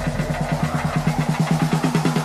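Live concert sound through the PA: a loud, low pitched electronic pulse repeating fast and evenly, about ten times a second, over a steady low hum, opening a song.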